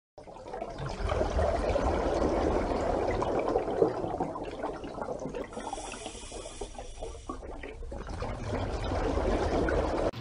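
A water sound effect: a steady rush of watery noise that fades in at the start, thins in the middle and swells again before cutting off at the end.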